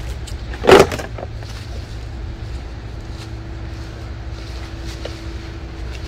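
A single loud, brief plastic clatter and rustle about a second in, as a pair of plastic leaf scoops is dropped onto leaf-strewn grass. After it, a steady low background rumble with a faint hum.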